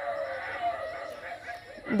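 An animal's drawn-out call in the background, wavering in pitch and fading out near the end.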